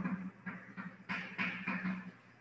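Chalk writing on a blackboard: a run of short, irregular scraping and tapping strokes, thinning briefly a little under a second in, then a denser run of strokes.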